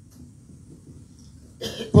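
A man coughs once into a handheld microphone near the end, after a stretch of faint room tone.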